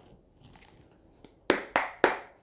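A deck of tarot cards being handled: quiet at first, then two short, sharp card sounds in quick succession about one and a half seconds in.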